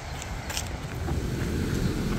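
A single footstep crunching on gravel about half a second in, then a low, steady outdoor rumble that grows about a second in.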